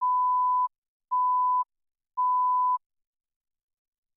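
Three electronic countdown beeps before the programme starts. Each is a steady single-pitch tone about half a second long, about a second apart.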